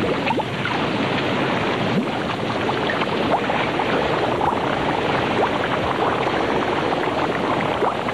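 Yellowstone mud pot boiling: thick mud bubbling steadily, with many small bubbles bursting.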